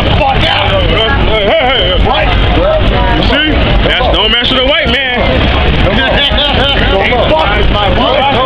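Voices talking continuously over a steady low rumble of street traffic.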